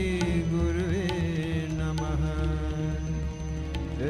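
Devotional chanting of a Sanskrit prayer: a voice holds and ornaments long sung notes over a steady instrumental drone.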